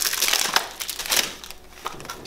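A cologne box being unwrapped and opened by hand: crinkling plastic wrap and rustling cardboard. The sound is dense for about the first second, then tapers off.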